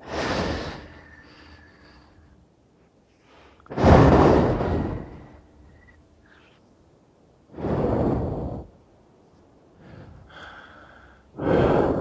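A person breathing heavily through a Skype call: four loud, noisy breaths or gasps, each about a second long and roughly four seconds apart, with fainter breathing between them.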